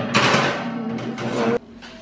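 Cast iron skillet scraping and rattling across a wire oven rack as it is slid into the oven, stopping sharply about a second and a half in.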